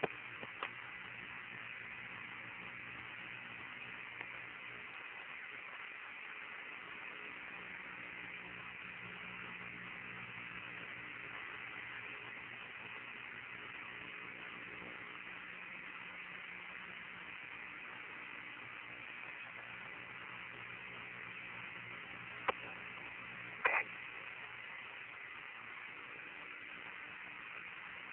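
Steady hiss of an Apollo 16 lunar-surface radio communications channel with no one transmitting, carrying a faint hum and a thin steady tone, with two brief clicks late on.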